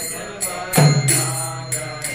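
Devotional kirtan chanting with drum and hand cymbals. Voices chant over ringing cymbals, and a deep drum stroke with a booming bass note sounds just under a second in.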